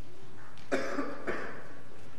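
A person coughing three times in quick succession, starting a little under a second in.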